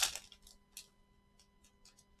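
Crinkles and clicks of a trading card pack's wrapper being handled and torn open by gloved hands: one sharper crackle at the start, then faint scattered ticks.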